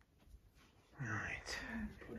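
Near silence for about a second, then a person speaking softly, close to a whisper, in two short stretches.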